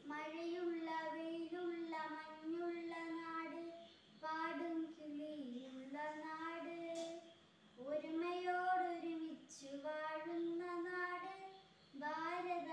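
A young girl singing solo and unaccompanied, holding steady notes in phrases of a few seconds with short pauses for breath between them.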